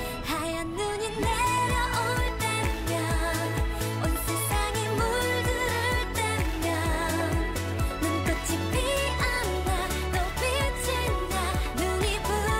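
A Korean pop song: a voice singing Korean lyrics over a steady beat and bass line.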